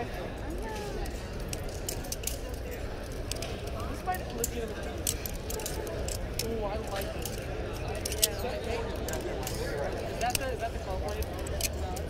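Balisong (butterfly knife) being flipped: irregular sharp clicks and clacks of its metal handles and latch knocking together, several a second. Indistinct voices in the background.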